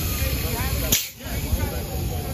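Busy street-scene noise: a steady low rumble with faint voices, and a single sharp click about a second in, after which the sound briefly drops out.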